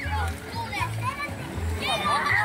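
Children shouting and calling out while playing in the water, over music with a steady, repeating bass beat.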